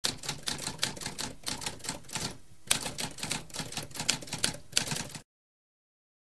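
Typewriter keys striking in a quick run of several keystrokes a second, with a short pause about two and a half seconds in. The typing stops suddenly about five seconds in.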